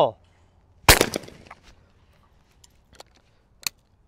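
A single shotgun shot from an over-under skeet gun about a second in, ringing off briefly, followed by a few faint clicks.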